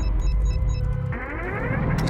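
Electronic thriller score: a deep, steady bass drone under quick, high, evenly spaced electronic blips. From about a second in, several tones glide upward together in a rising synth sweep.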